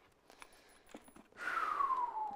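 Faint clicks of a steel crampon being handled against a mountaineering boot. About a second and a half in comes a breathy sound with a falling whistle-like tone, lasting about a second.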